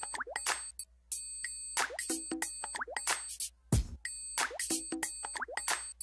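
Looping background music of short plucked notes and little rising blips, with a deep hit about four seconds in. The pattern repeats roughly every five seconds.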